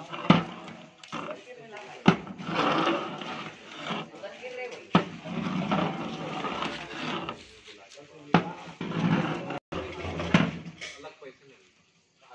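A long metal ladle knocking against a large metal cooking pot about five times, each knock followed by a second or two of stirring through the rice and water in the pot.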